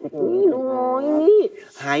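Speech: a voice stretching a word out long in a whining, sing-song tone.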